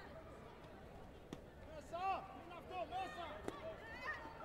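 Several short, high-pitched shouts in quick succession from about two seconds in, with two sharp impact smacks, one just before the shouts and one among them.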